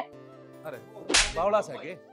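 Soft background music with held tones, cut by one short, sharp swish-like hit about a second in, typical of a dramatic sound effect added in editing; faint wavering tones follow it.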